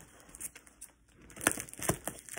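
Parcel packaging and tape being crinkled and pulled apart by hand, mostly soft rustling with two sharp crackles in the second half.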